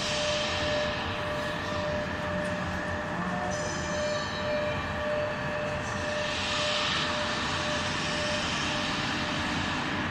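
Hydraulic CNC press brake running, a steady machine hum with a thin high tone held through most of it. A hiss swells briefly about six seconds in.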